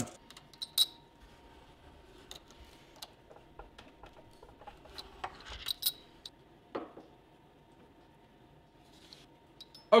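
Scattered light metallic clicks and clinks as small double cap rivets are handled and set with a hand-lever arbor press, the last press click a little before seven seconds in.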